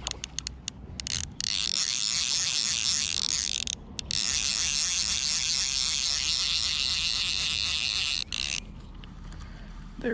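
Fly reel's click-and-pawl ratchet buzzing rapidly as the spool turns while a hooked bluegill is reeled in. There are two long runs, the second about four seconds, with a short break between them, and they stop about eight seconds in. A few single clicks come first.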